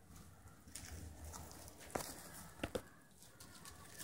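Faint rustling and crinkling of plastic cling wrap being stretched and wound around a person's stomach, with a few small sharp crackles about halfway through.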